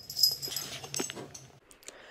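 Excited dog noises: short whines and breathy sounds over a faint room hum, with a sharp click about a second in. The sound cuts off shortly before the end.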